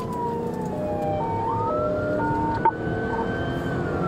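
Police car siren on a slow wail, falling in pitch, then rising about a second and a half in and holding, over the engine and road noise of the patrol car at highway speed. Short alternating high and low tones of a second siren sound in the middle, and a single sharp click comes about two-thirds of the way through.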